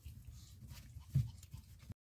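A small white Pomeranian giving one brief whimper about a second in, over faint low rumble and the rubbing of a hand over the phone.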